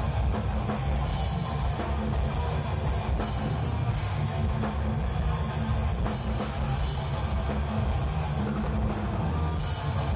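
Heavy metal band playing live without vocals: distorted electric guitar, electric bass and a drum kit with bass drum, loud and dense.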